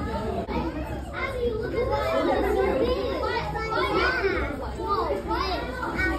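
Several children talking and calling out over the general chatter of a crowd, with many voices overlapping and their pitch swooping up and down.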